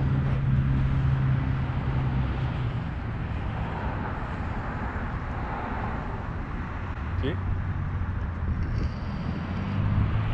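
Outdoor engine drone, a steady low hum over background noise that weakens midway and comes back near the end.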